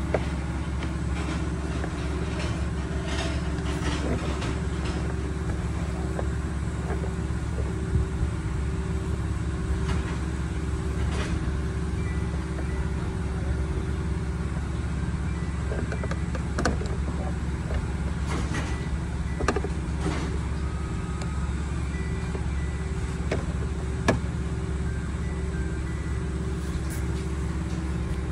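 A vehicle engine idling with a steady low hum, with scattered light clicks and taps as a long-reach lockout tool works inside a semi truck's door.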